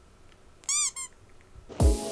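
Two short, high squeaky chirps in quick succession, each rising and then falling in pitch: a cartoon-like sound effect added in editing. Near the end comes a sudden loud burst with a low thud.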